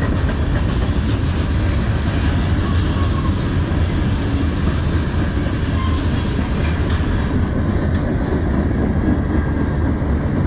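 Freight cars of a manifest train rolling past at close range: a loud, steady rumble of steel wheels on the rails.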